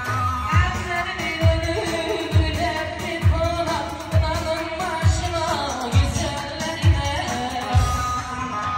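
Live Turkish folk-pop dance music: a man singing into a microphone over amplified bağlama (saz) and keyboard, with a deep drum beat a little more than once a second.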